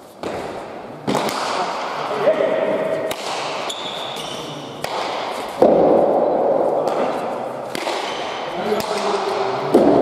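Basque pelota rally: the hard ball smacking against the court walls and floor about six times, sharp hits that echo through the large hall. The loudest hits come just past the middle and near the end.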